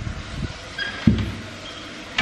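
A dull thump about a second in, amid low rustling and movement noise.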